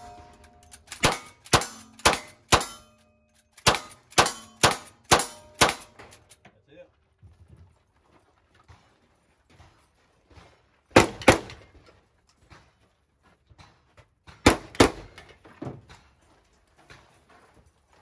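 A rifle firing a quick string of about ten shots, roughly two a second, at steel targets that ring as they are hit. After a pause, a few more scattered shots and clangs follow.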